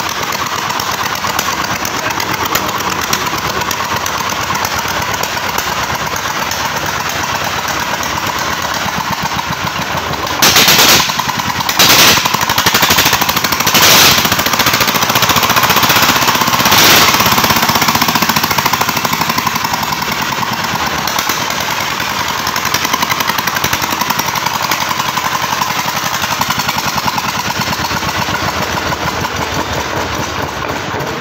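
Jiang Dong D33 horizontal single-cylinder diesel engine running with a fast, loud firing chatter. About a third of the way in it is revved up in several louder bursts for some six seconds, then settles back to a steadier run.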